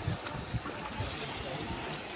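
Wind rumbling on the microphone over the wash of sea water, with faint distant voices.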